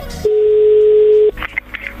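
Telephone line tone: one steady, single-pitch beep about a second long, starting a moment in, as a call is being placed and rings through.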